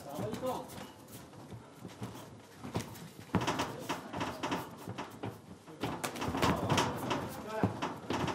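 Voices calling out from ringside during an MMA bout, with a few sharp slaps of kicks and punches landing.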